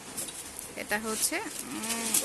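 A woman's voice drawing out a single word as a long, wavering held vowel, the sound of a hesitation while she searches for what to say.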